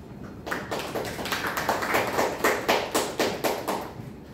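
A few people clapping, starting about half a second in and stopping just before the end.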